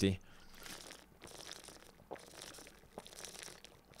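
A plastic water bottle crinkling as someone drinks from it: faint, in several short bursts with a couple of small clicks.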